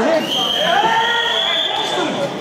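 A referee's whistle blown in one long, steady, high blast lasting about a second and a half, stopping the wrestling on the mat, over shouting from the mat side.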